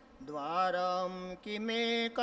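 A man chanting a Sanskrit verse in a slow, melodic recitation tone. It starts a moment in with one held phrase, breaks briefly, then resumes on a higher held note.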